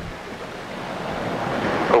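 A steady hiss-like rushing noise with no clear tones, growing slowly louder.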